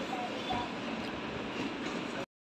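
Steady background noise of a restaurant dining room, with faint voices in the background.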